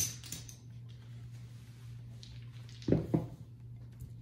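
Casino chips clicking as they are set down on a felt craps table, then about three seconds in a pair of dice thrown and knocking twice on the table, over a steady low hum.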